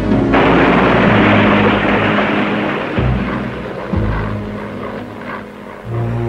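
Propeller aircraft engine noise, a rushing sound that comes in suddenly just after the start and fades over the next few seconds, laid over background music.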